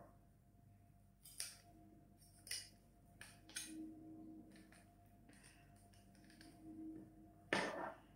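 A handful of faint, separate clicks and taps from a plastic wire egg slicer as a boiled egg is pressed through its wires, turned and shaken out into a bowl.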